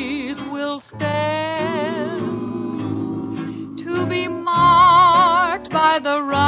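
Old-time radio cowboy song: singing with a wide vibrato on long held notes, over instrumental accompaniment.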